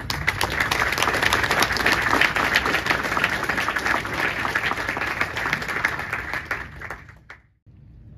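Audience applauding: dense, steady clapping that dies away about seven seconds in.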